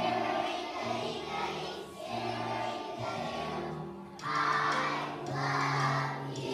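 A large choir of kindergarten and first-grade children singing together over instrumental accompaniment, with a louder phrase from about four seconds in.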